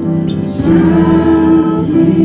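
Small vocal group singing a slow gospel song in harmony, the voices holding a long chord from about half a second in.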